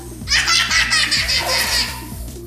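A toddler laughing in a run of breathy pulses for about a second and a half, with background music underneath.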